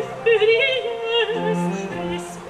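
A soprano singing a French baroque air with wide vibrato, accompanied by a viola da gamba holding low notes. The voice phrase ends about a second and a quarter in, and the instruments carry on.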